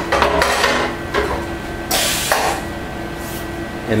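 Knocks and clatter of a screen-printing frame being loaded and seated on a Spyder II direct-to-screen printer, with a short hiss about two seconds in over a steady machine hum.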